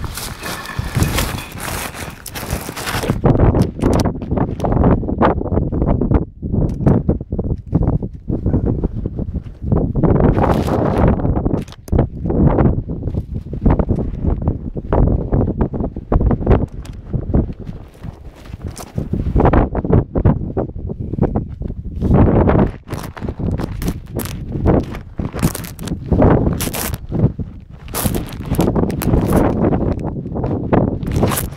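Wind buffeting the microphone in irregular gusts, mixed with the rustle of clothing rubbing over it.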